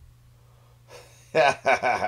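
A faint steady low hum, then a voice speaking loudly from about a second and a half in.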